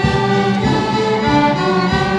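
Student string orchestra of violins, cellos and double bass playing sustained chords, the notes shifting a couple of times.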